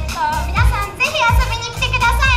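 Background music with a steady kick-drum beat, about three beats every two seconds, played over the PA under a young woman talking into a microphone.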